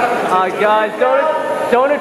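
People talking, their words not made out by the transcript.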